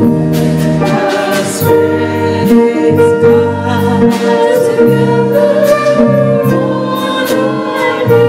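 Gospel singing with keyboard accompaniment: voices hold long, wavering notes over sustained chords, with a light, steady beat underneath.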